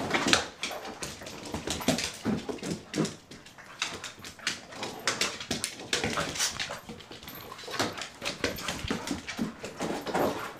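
Two dogs play-wrestling, giving short whines and vocal sounds among a busy run of sharp clicks and knocks from paws and claws on a hardwood floor and raised dog cots.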